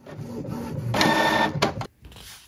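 Desktop printer running as it feeds and prints a sheet of paper, its motor whine loudest about halfway through, then a click and a sudden stop near the end.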